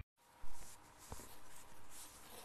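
Faint scratching and handling noise with one light click, over low room hiss.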